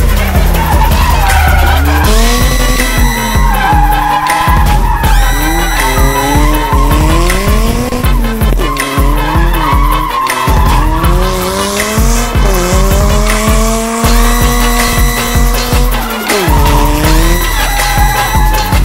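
Drift car engine revving up and down again and again, with tyres squealing as the car slides. A bass-heavy music track plays under it.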